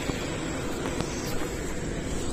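City bus driving away at low speed: a steady engine and road noise with no distinct events.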